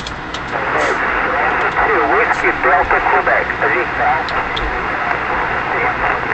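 Elecraft K3 transceiver receiving single-sideband on the 2-metre (144 MHz) band: a steady band-limited hiss with a weak, noisy voice of a distant station coming through over a sporadic-E path, clearest in the first half and fading toward the end. The distant operator is repeating his call sign in answer to a request.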